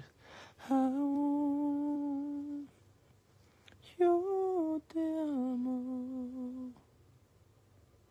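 A man humming a slow tune close to the phone's microphone: one long steady note, then after a pause a short phrase of notes that falls in pitch.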